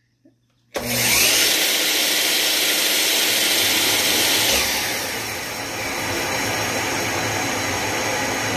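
A miter saw's motor starts suddenly about a second in and runs, with a dust extractor switched on alongside it by a current-sensing auto switch. About four and a half seconds in the saw is switched off and the extractor keeps running, set to run on for five seconds after the tool stops.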